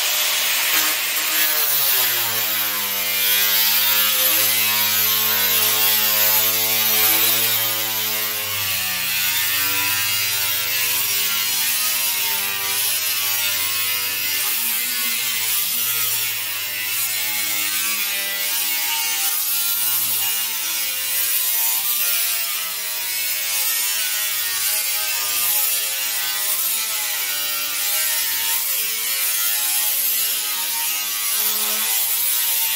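Small electric angle grinder with a cut-off disc cutting through sheet steel, running without a break, its motor whine wavering in pitch as the disc bites into the cut.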